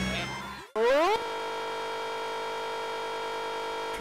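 A sound fades out to a brief silence, then an electronic tone rises quickly in pitch and holds one steady, unwavering note for about three seconds.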